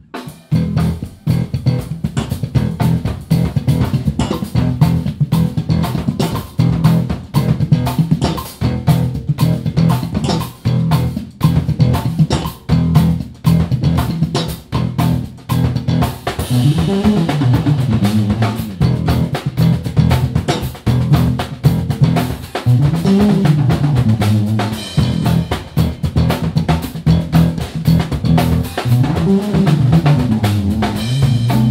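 Live band of two electric bass guitars and drums playing an up-tempo tune, starting sharply with dense, driving drum strokes under low bass lines. From about halfway through, a bass plays melodic runs that climb and fall in pitch.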